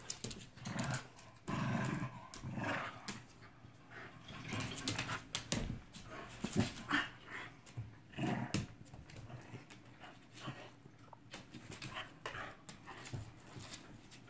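Small dog growling in play in irregular bursts as it bites and tugs at a plush slipper on a person's foot. Sharp clicks run through it, from its claws on the hardwood floor.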